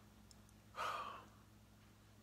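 A man's single audible breath, a sigh-like rush of air lasting about half a second, a little under a second in. Otherwise only quiet room tone with a faint low hum.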